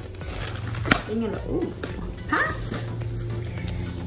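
Clear plastic shrink wrap being torn off a MacBook Pro box, with one sharp snap about a second in. A few short pitched sounds that slide up and down follow.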